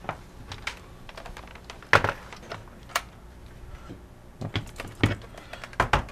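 A laptop's plastic case being handled and turned over on a desk: scattered clicks and knocks, with louder knocks about two seconds in and about five seconds in.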